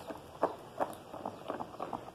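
Bleach being poured from a small glass cup into a plastic basin of hot, foamy soap paste, heard as a string of light, irregular taps and clicks.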